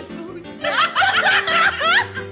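Loud laughter breaking out about half a second in and running in bursts with rising squeals near the end, over a steady background music track.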